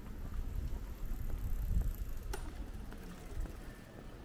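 Quiet street ambience: a low rumble that swells around the middle, with one sharp click a little past halfway.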